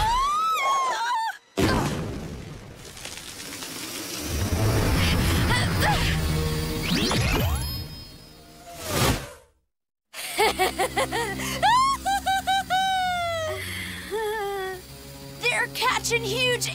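Cartoon soundtrack: a short cry, then a sudden crash about a second and a half in and several seconds of dense action sound effects with music. After a whoosh and a brief total dropout, a short bright musical sting with sliding, sung-like notes plays under the show's title card, and a voice comes in near the end.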